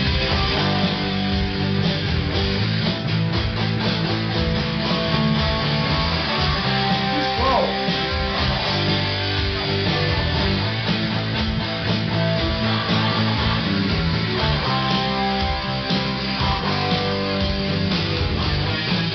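Live rock jam on guitars: an electric guitar and an acoustic-electric guitar playing together, steady and unbroken.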